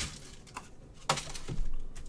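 A few short clicks and knocks with quiet between them, the two loudest about a second in and half a second later.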